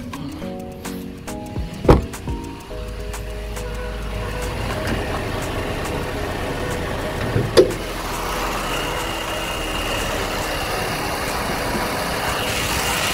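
Chevrolet Spin's 1.5-litre S-TEC III 16-valve four-cylinder petrol engine idling, a steady running sound that comes up from about three seconds in and holds. A sharp click about two seconds in and another a little past seven seconds stand out above it.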